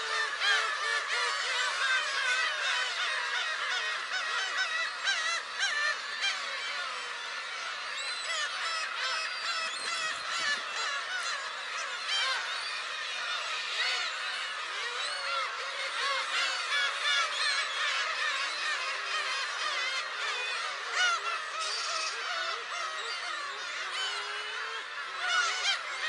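Colony of black-tailed gulls calling without a break: many cat-like mewing cries overlap into a dense chorus.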